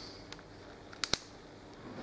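Two quick small clicks about a second in, with a few fainter ticks before them: a thin screwdriver working in a plastic connector block, pressing a tabbed metal terminal's locking tab flat so the terminal comes free and pulls out.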